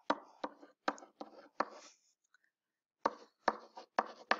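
A stylus tapping and scratching on a writing tablet in short, quick strokes as a string of digits is written by hand. There are about five strokes in the first two seconds, a pause, then a few more shortly after the third second.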